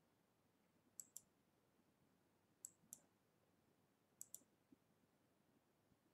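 Computer mouse clicking: three quick pairs of clicks, about a second and a half apart, over near silence.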